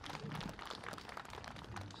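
Scattered hand clapping from a small audience, fairly faint, a dense run of sharp claps.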